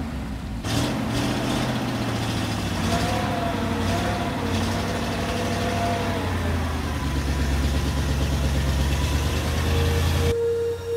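Engine of an old water-tanker truck running as it drives across an ice track, a steady low engine note that grows louder about seven seconds in.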